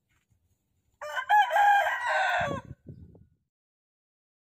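A rooster crowing once, about a second in, in a single call of about a second and a half, followed by two short low thuds.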